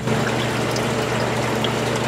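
Water from the grow beds' drain pipe pouring steadily into the aquaponics sump tank, splashing on the water's surface, over a steady low hum.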